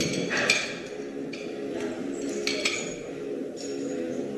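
Two faint metallic clinks from the loaded Eleiko barbell and its plates, once about half a second in and again about two and a half seconds in, as the deadlift is held at lockout and lowered.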